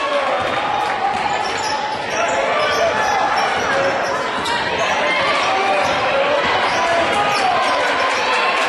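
Basketball being dribbled on a hardwood court during live play, with repeated sharp bounces in a reverberant gym and voices throughout.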